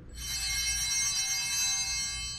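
Altar bells ringing at the elevation of the consecrated host, marking the moment of consecration. A bright, many-toned ring starts suddenly just after the start and fades slowly.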